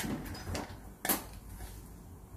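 A few sharp clicks and knocks of things being handled, the loudest about a second in.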